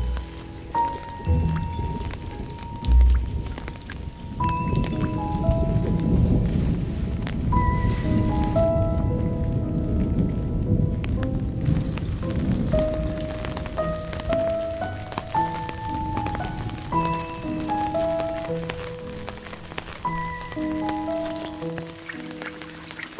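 Rain falling and pattering on garden surfaces, heaviest through the middle stretch, under a soft melodic music track of held notes. A low thud comes about three seconds in.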